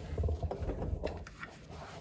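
Handling sounds: a few soft knocks and low rubbing as a hand reaches down to the cleaning pad of a stopped rotary floor machine.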